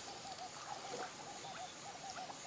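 Faint field ambience with a small animal's short call repeated evenly, about four times a second, over a soft background hiss.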